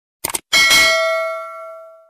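Sound effect of two quick clicks, like a screen tap, followed by a bright bell ding that rings out and fades over about a second and a half.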